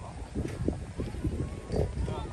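Footsteps crunching in packed snow, an irregular run of short crackly strokes, with faint distant voices from the slope.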